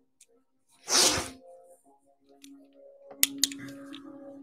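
A short hissing burst about a second in, then two sharp clicks near the end, over faint background music.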